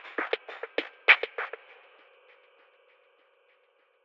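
A lo-fi drum-machine beat, thin and band-limited through the Waves Retro Fi and Lofi Space plugins, plays a few hits and stops about a second and a half in. Its echo and reverb tail then fades away.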